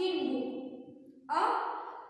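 Speech only: a woman's voice speaking in two short phrases with a brief pause between them.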